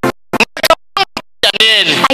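Music and a person's voice, cut into short fragments by repeated drop-outs to silence. About two-thirds of the way through, a voice comes in, sliding up and down in pitch.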